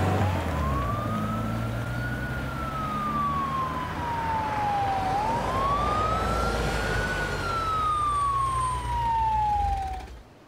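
Emergency-vehicle siren wailing, sweeping up quickly and then falling slowly in two long cycles of about five seconds each, over the low rumble of a car engine. Both cut off suddenly at the end.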